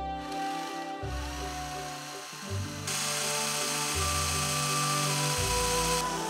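Cordless drill boring into a wooden dowel: a whirring motor with the rasp of the bit cutting wood, loudest from about halfway in, over background music.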